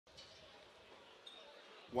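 Faint steady open-air background noise with one tiny click about a second in, then a man's race commentary voice starts right at the end.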